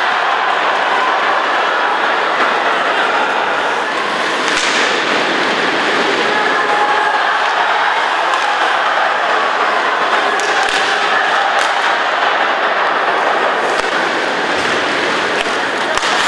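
Ice hockey arena sound during play: a steady crowd din, with a few sharp knocks of stick, puck or boards over it.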